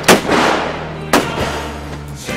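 Two loud gunshots about a second apart, the first trailing off slowly over most of a second.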